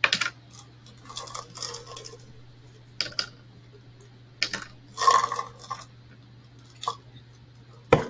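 Online poker client's sound effects as a new hand is dealt and played: a string of short clicks, card-dealing swishes and chip clinks, one of them ringing briefly. A faint steady low hum runs underneath.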